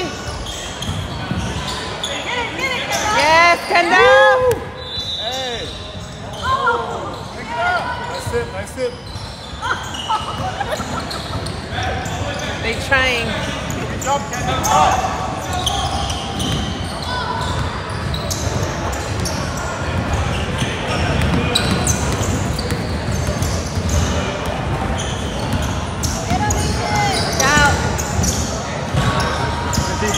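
A basketball dribbled and bouncing on a hardwood gym floor during play, with shouts from players and spectators echoing around the gym, loudest in the first few seconds.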